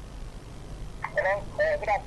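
Only speech: a caller's voice coming in over the telephone line, thin and quieter than the studio voice, starting about a second in after a near-silent pause with a low hum.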